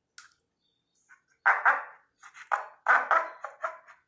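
A home-made cup-chicken noisemaker: a wet hand is pulled down a string threaded through a plastic cup, and the cup gives about four short squawks in the second half.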